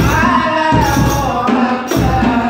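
Rebana ensemble of hand-struck frame drums (terbang) with a bass drum (jidur) beating a steady rhythm, while a woman sings a sholawat melody into a microphone.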